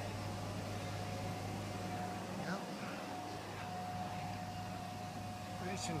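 Steady low machine hum with a thin, steady whine over it, and faint voices in the background.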